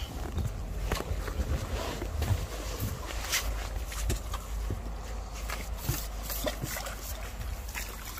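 Wind rumbling on the microphone, with scattered small clicks and light water sloshing while a hooked carp is played in on rod and reel.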